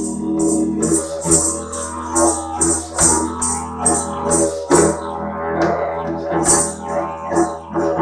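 Didgeridoo played as a continuous low drone, with rhythmic breathy pulses in its upper overtones about two to three times a second and a few sharper accents.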